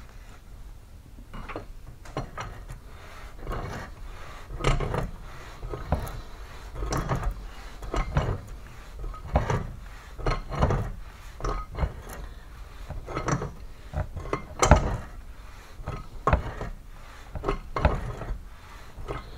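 Head gland nut being spun down on a hydraulic cylinder barrel and tightened with a large wrench: irregular metal clinks, knocks and scraping about once or twice a second, with one louder knock late on.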